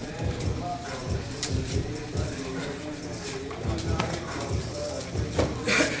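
Irregular soft thuds of grapplers' bare feet and bodies shifting on foam training mats and against padded wall mats during clinch wrestling, with indistinct voices; a louder scuffing noise comes near the end.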